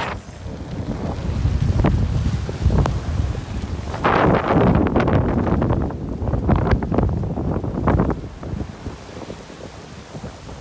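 Squall wind buffeting the microphone aboard a sailboat, with waves washing against the hull. The gusts are strongest through the middle and ease off near the end.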